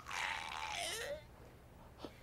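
A person's breathy vocal sound, like a low groan or exhale, lasting about a second with a short pitch glide near its end, then quiet.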